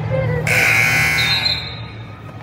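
Electronic gym scoreboard buzzer sounding once for about a second, starting suddenly about half a second in, as the clock runs out to end a wrestling period.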